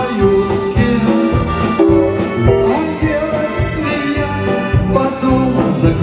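Live band playing with the accordion to the fore, backed by electric guitars, bass guitar and a drum kit keeping a steady beat.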